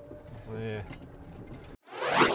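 Low, steady running noise of a golf course utility cart being driven, with a brief spoken sound about half a second in. The sound cuts out abruptly just before the end.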